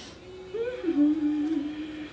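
A woman humming one drawn-out "mmm" as she thinks. It starts about half a second in, rises briefly, then drops and holds with small steps down in pitch for about a second and a half.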